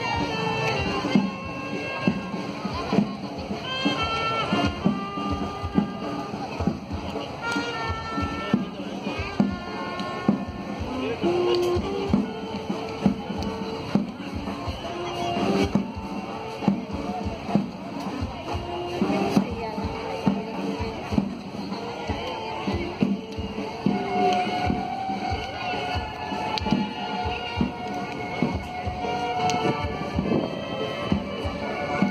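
Live band music played outdoors, a melody on horns over a steady drum beat, with crowd voices underneath.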